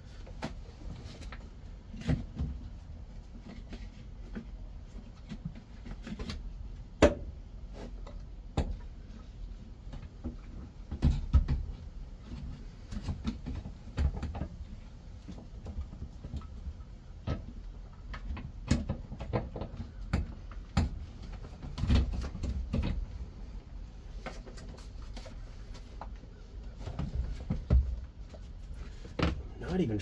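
Irregular clicks, knocks and clunks of a steering wheel and column being handled and worked into place in a stripped car interior, with scattered louder knocks and low thuds of the parts bumping the body.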